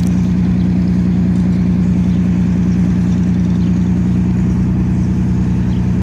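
A large engine or generator running steadily at idle: a loud, unbroken low hum with a fast, even pulse beneath it.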